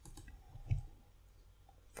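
Faint clicks of a computer keyboard or mouse as a formula is edited, the most distinct about three quarters of a second in.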